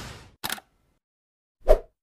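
Sound effects for an animated logo intro. The tail of a whoosh fades out, a brief click comes about half a second in, and a louder short pop comes near the end.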